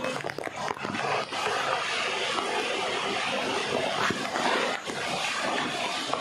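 Water rushing and splashing over rocks in a steady hiss, with a few short sharp sounds in the first second.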